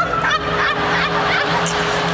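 Laughter in short bursts over a steady held note of background music.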